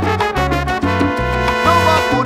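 Salsa recording: a horn line of long held notes, apparently only two horns, over a bass line that steps through several notes.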